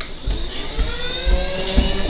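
A whine in several pitches gliding upward together over a hiss, with low thumps underneath.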